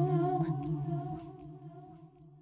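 A single hummed vocal note held with a slight waver in pitch, fading out steadily as the song ends.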